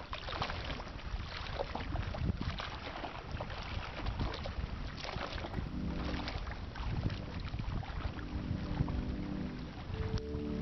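Water sloshing and wind noise on the microphone, rough and irregular. About halfway through, soft sustained music tones fade in underneath.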